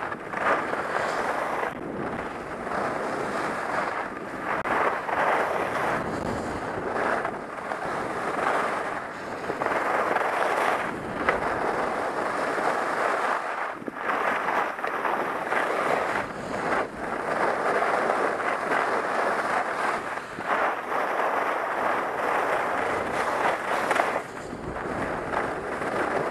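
Rushing noise of skiing down a groomed slope: skis scraping over hard-packed snow, with wind on the camera's microphone. It rises and falls in surges every second or two.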